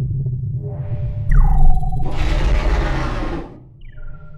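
Electronic logo sound effect: a deep, steady rumble with a falling tone about a second in, then a loud whoosh that swells and fades, and a second falling tone that levels into a held note near the end.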